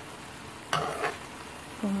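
Locrio of rice, corn and bacon sizzling steadily in a metal pot as its last liquid cooks off, with one scrape of a metal spoon through the rice a little under a second in as it is gathered toward the middle.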